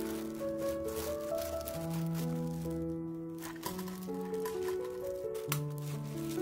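Background music of slow, held notes. Under it, faint squishing and plastic-glove crinkling as salted julienned radish is squeezed dry by hand, with a couple of sharp clicks in the second half.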